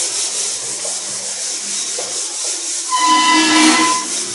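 Whiteboard duster wiping across a whiteboard, a steady scrubbing hiss, rising into a squeak near the end.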